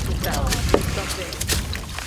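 Dry wood chips and plant material rustling and clicking as they are handled and tipped from a plastic bucket, with a few sharp clicks. A low wind rumble on the microphone runs underneath, and a brief voice comes in shortly after the start.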